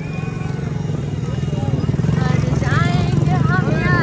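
A loud motor engine running and growing steadily louder, with voices over it in the second half.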